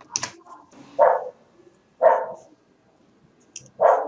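A dog barking three times, about a second apart.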